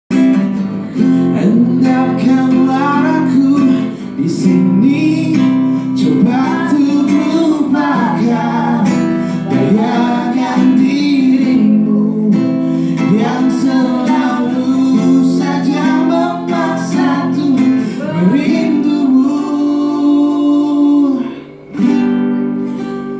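A song sung live to a strummed acoustic guitar, the voice carried on a microphone. The music dips briefly about a second before the end.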